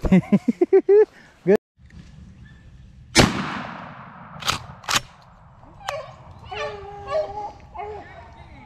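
A single shotgun shot about three seconds in, with a long echoing tail, followed by two sharp clicks. A man laughs at the start, and a dog calls briefly near the end.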